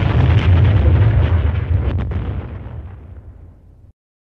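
An explosion sound effect: a deep, rumbling blast that fades over about three seconds and then cuts off suddenly near the end.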